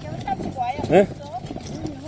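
Mostly speech: a man's short questioning "ne?" about a second in, and another voice starting near the end, with only faint background noise between.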